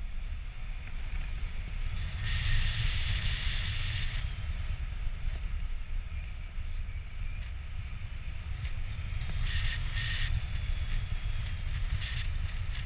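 Airflow buffeting an action camera's microphone in paraglider flight: a steady, gusty low rumble. A higher hiss joins it briefly twice, about two seconds in and again near the end.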